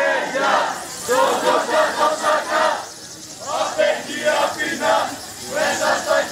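A crowd of protesters chanting a slogan in unison: rhythmic shouted phrases, repeated with a short break about three seconds in.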